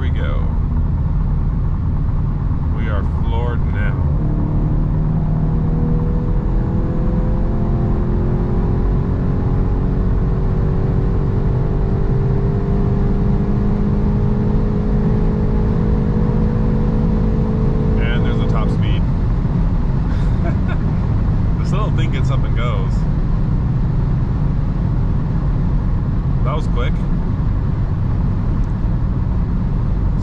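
A 2022 Volkswagen Golf GTI's turbocharged 2.0-litre four-cylinder under full throttle through its 7-speed DSG, heard from inside the cabin over heavy road and wind noise. The engine note rises slowly for about fourteen seconds, then drops away about eighteen seconds in as the speed limiter cuts the power at around 125 mph, leaving tyre and wind noise as the car slows.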